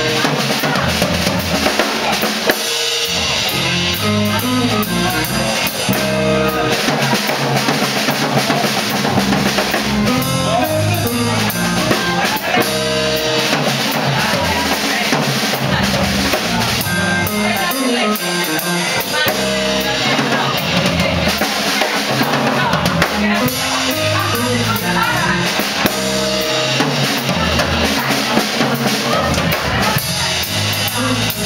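Live band of electric guitar, piano, electric bass and drum kit playing.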